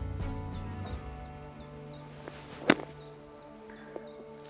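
A golf club strikes a ball out of bunker sand: a single sharp hit about two-thirds of the way in. Background music with held tones plays throughout.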